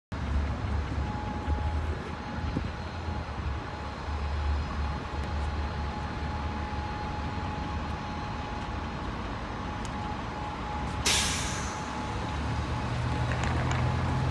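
Downtown street traffic: a steady low rumble of vehicles with a faint steady whine. About eleven seconds in comes a sudden hiss that fades within a second, typical of a heavy vehicle's air brakes releasing. Near the end an engine grows louder.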